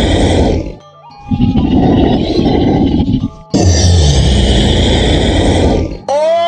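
Monster growl sound effect voicing a cartoon Venom creature: loud, rough growls in long bursts of about two seconds, breaking off briefly about a second in and again just past three seconds. A quiet background music bed with steady tones runs beneath.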